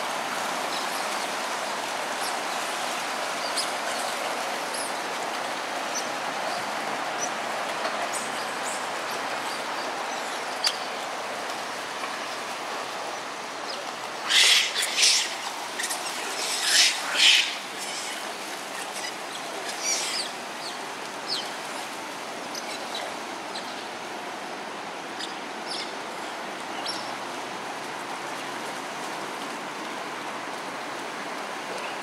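Steady rush of flowing water churned by smooth-coated otters playing and splashing, with scattered short high chirps and a louder cluster of sharp, shrill sounds about halfway through.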